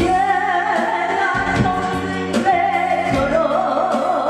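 A woman singing a Korean trot song into a microphone over instrumental accompaniment with a bass line and a steady drum beat; near the end she holds a long note with wide vibrato.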